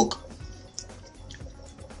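Faint background music.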